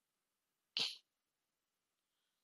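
Near silence, broken about three-quarters of a second in by one short breathy hiss from a person at the microphone.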